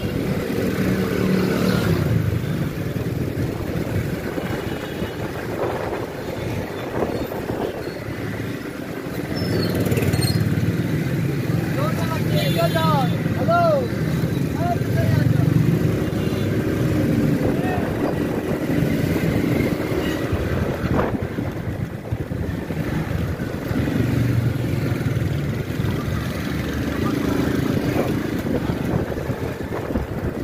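Small motorcycle engine running while riding through town traffic. The engine note swells and eases with the throttle, and a short wavering higher tone sounds about twelve seconds in.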